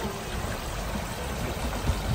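Steady rush of water running through concrete trout raceways.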